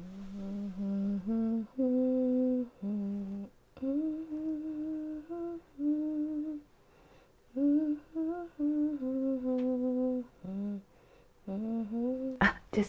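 A woman humming a slow melody without words: held notes that step up and down, with two short breaks.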